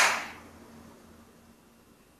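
A short burst of noise right at the start, fading within about half a second, then quiet room tone with a faint steady hum.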